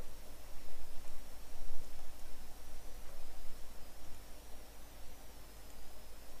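Room tone from a voice-over microphone: a steady hiss with a low mains hum and a faint, wavering high whine, with no distinct sound events.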